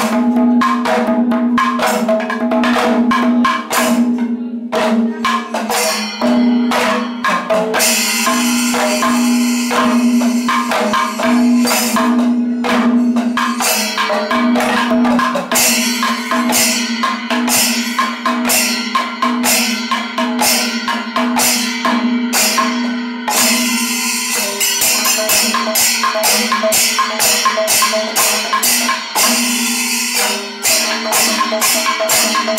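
Kerala Panchavadyam temple percussion: hand-struck timila and maddalam drums playing fast, dense strokes over a steady held tone. From about eight seconds in, ilathalam cymbals join with a bright metallic clashing.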